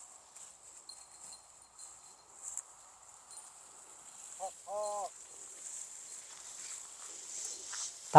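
Quiet evening field ambience with a steady high insect chirring and faint rustling. About halfway through comes a short voiced call, a brief herding shout to the cattle.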